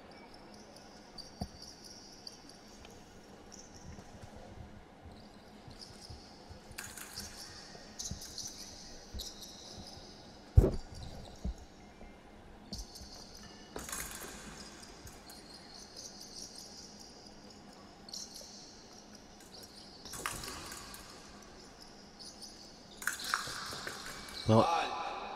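Fencers' footwork on the fencing piste during an épée bout: faint scuffs and scattered thumps, the loudest a single sharp thump a little past halfway, with a busier flurry near the end.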